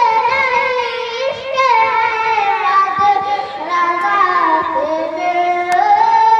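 A boy singing a naat, a devotional Urdu poem, into a microphone, in long held notes that slide from pitch to pitch.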